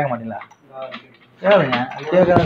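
A man speaking in short phrases, with a brief mechanical clicking rattle in the pause between them.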